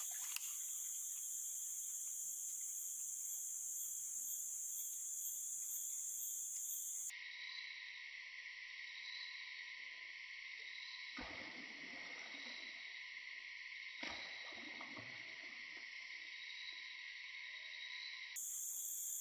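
Steady, shrill chorus of forest insects droning at a high pitch, with its pitch band changing abruptly about seven seconds in. Two brief, soft noises come through the drone about eleven and fourteen seconds in.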